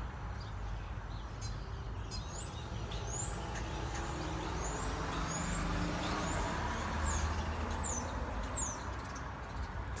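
Outdoor street ambience: a road vehicle passing, a low rumble that swells through the middle and fades near the end. Over it, a small bird gives a string of short, high chirps.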